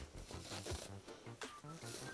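Faint rustling and scratching of corduroy fabric being scrunched by hand as it is gathered along a basting thread.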